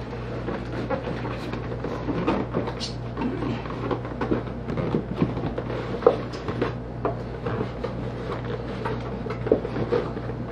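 A cardboard beer case handled and bumped against a wooden floor: scattered light knocks and scrapes, the sharpest about six seconds in.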